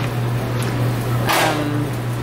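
A steady low hum, with a short hiss a little past halfway.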